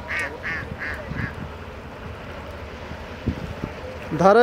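A duck quacking about five times in quick succession in the first second and a half, followed by quiet background and a dull thump near the end.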